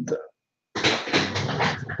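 A dog vocalising for about a second, starting just under a second in.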